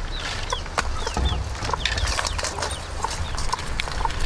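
Chickens peeping and clucking: a string of short, high, falling chirps, about two a second, over a low steady rumble.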